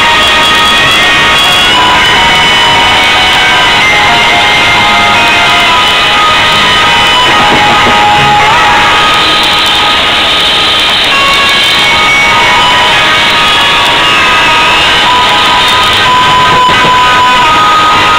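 Live band playing loudly on stage: guitar and drums, with a keyboard, in one continuous stretch of a song.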